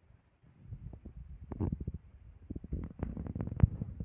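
Low, irregular rumbling with many short knocks, starting about half a second in, with a sharper knock near the end: handling noise from the phone being moved.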